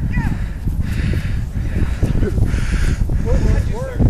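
Wind rumbling on the microphone, with a few short, harsh crow caws: one right at the start and two near the end.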